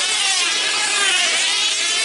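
High-pitched buzz of several F2C team-race model aircraft's 2.5 cc diesel engines running flat out as they circle on their control lines, the pitch wavering up and down.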